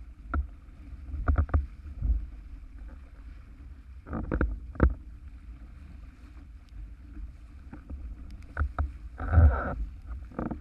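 Windsurf board sailing fast over choppy water in gusty wind: a steady low rumble of wind on the microphone with irregular thuds and splashes as the board slaps through the chop, the biggest near the end.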